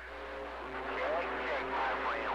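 CB radio receiver playing a faint, garbled voice over hiss, with a few steady whistling tones under it; the voice comes in about half a second in.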